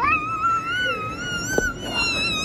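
A child's long, high-pitched squeal, wavering up and down in pitch and held for over two seconds.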